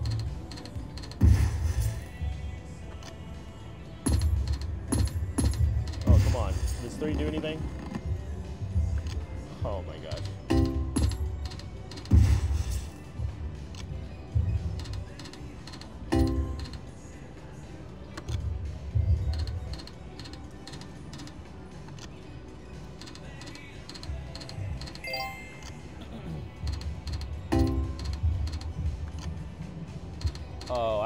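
Video slot machine sound effects over casino background music: spin after spin, with a low thud every few seconds as the reels land and short chiming jingles for small hits.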